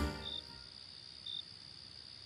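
Cricket chirping: short, high chirps about once a second over a faint hiss, as background music fades out in the first half-second.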